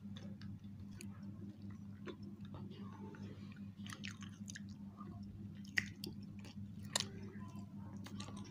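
Two people chewing soft cheese-topped bread, with small wet mouth clicks and two sharper clicks about six and seven seconds in, over a steady low hum.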